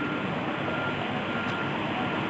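A truck's reversing alarm beeping faintly over a steady hum of street noise.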